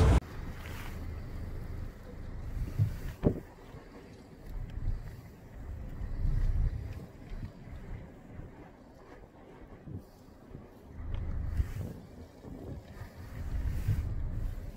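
Wind buffeting the phone's microphone in uneven gusts, a low rumble that swells and fades, with a brief knock about three seconds in.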